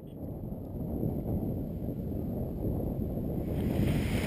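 Wind blowing across the microphone: a steady low rumble that fades in at the start and builds gradually louder.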